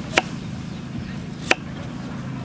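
Kitchen knife chopping through a carrot onto a wooden chopping block: two sharp chops about a second and a half apart, over a steady low background hum.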